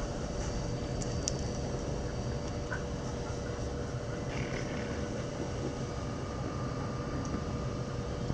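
Steady outdoor background hum: low, even noise with a faint constant tone running through it, and no barking or voices.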